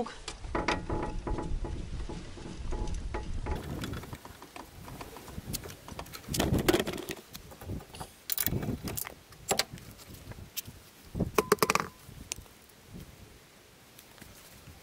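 A scissor jack being cranked to lift the front of a VAZ 2106, a low grinding rumble for the first few seconds. Then come scattered metallic clicks and clanks as the wheel bolts come out and the front wheel is pulled off the hub.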